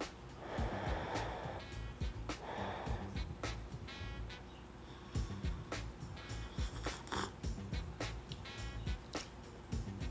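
Two long breaths blown across a mug of hot tea to cool it, the first about half a second in and the second near three seconds, over background music with a steady ticking beat.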